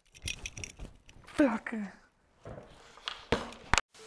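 Scattered knocks and rustles as a small hand-held object is thrown across a small room, with a short falling vocal sound near the middle and two sharp clicks near the end before the sound cuts off abruptly.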